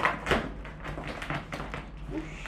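A blade slitting the packing tape on a cardboard box: a couple of sharp knocks at the very start, then a run of irregular scratchy crackles as the tape is cut and the cardboard shifts.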